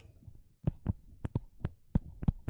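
Stylus tapping on a tablet screen while handwriting: about half a dozen short, irregularly spaced soft taps.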